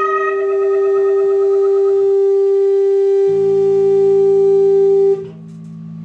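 Electric guitars and bass holding a final sustained chord that rings steadily, with a low bass note joining about three seconds in. The band cuts off sharply about five seconds in, leaving a faint amplifier ring.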